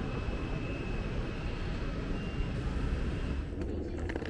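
Steady rumbling, hissing background noise with a faint high whine running through it. The sound changes near the end, the hiss thinning out.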